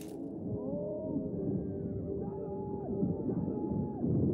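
Movie soundtrack of an arena chariot battle: a steady crowd din with faint drawn-out, gliding tones above it.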